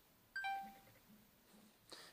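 A short electronic two-note chime, a high tone falling to a lower one that rings on for about half a second, marking the completed transfer of a photo from the camera to the smartphone.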